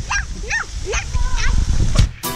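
A young girl's voice making about four short, high, yipping squeaks that swoop sharply up and down in pitch, over a low rumble.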